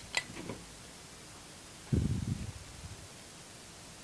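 Handling noise as a handheld camera is moved over the wires: a sharp click just after the start, then a low thump about two seconds in that dies away over half a second, over faint steady hiss.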